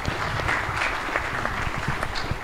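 Audience applauding, many hands clapping in a dense, steady patter.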